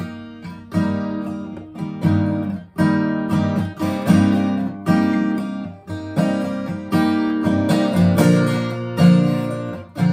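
Acoustic guitar capoed at the third fret, strummed in chords, starting right away: a strong strum about once a second with lighter strokes between, the chords changing as it goes.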